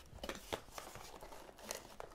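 Cardboard box and plastic wrapping rustling and scraping faintly as speakers are unpacked, with a few small clicks.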